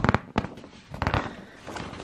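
Thick, glossy paper pages of a theatre programme being turned by hand: a few short, sharp crackling rustles.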